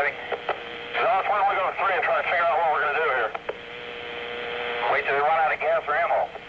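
Police two-way radio traffic: voices coming through a narrow, tinny radio channel, too garbled to make out, over a steady tone. Between the transmissions a hiss of static swells up.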